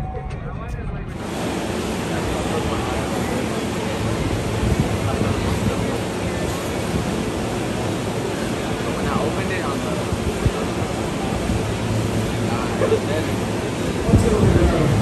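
Steady outdoor rushing noise with faint distant voices mixed in. It starts abruptly about a second in, replacing a quieter stretch.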